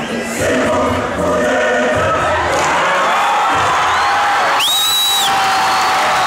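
A large choir singing as loud crowd cheering builds over it. A shrill whistle cuts through near the end: it rises, holds for about half a second, and falls away.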